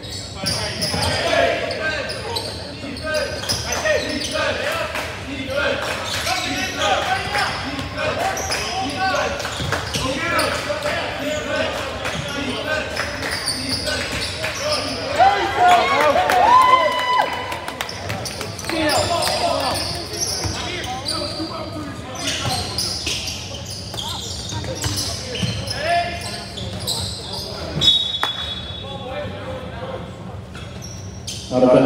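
Live basketball game in a gym: a basketball bouncing on the hardwood floor and players' feet on the court, with voices calling out. The sound echoes in the large hall.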